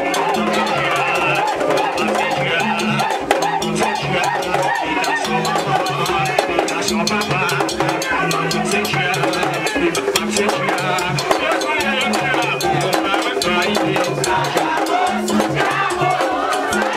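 Vodou dance music: drums and other percussion playing a steady repeating beat, with singing over it.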